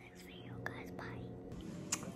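A girl whispering close to the microphone, with a sharper click near the end.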